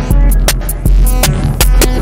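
Live electronic music: a deep bass pulse about every three-quarters of a second under sharp, clicking percussion and sustained synth tones.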